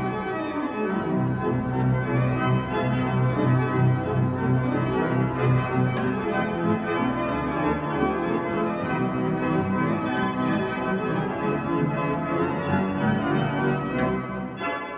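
Church pipe organ played from its console: a 'hot', jazzy piece of full chords over a strong bass line.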